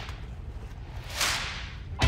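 A mesh hoop net swung through the air: one short swish a little past halfway, over low background noise.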